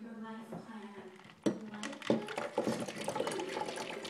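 A knock about a second and a half in, then chilled coffee pouring from a metal cocktail shaker into a glass jar.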